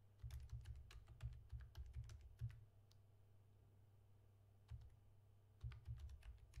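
Typing on a computer keyboard: a quick run of keystrokes for about two and a half seconds, a pause with a single keystroke, then another run of keystrokes near the end.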